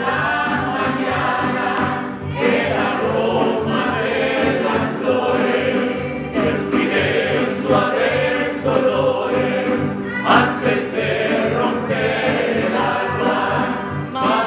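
Mariachi band performing live: men and women singing together over a steady strummed rhythm with a plucked guitarrón bass line.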